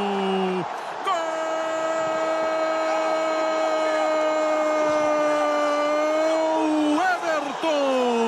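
Portuguese-language football commentator's drawn-out goal cry, "goool": a short falling shout, then one long held note of about six seconds, breaking into short calls near the end. It signals a converted penalty.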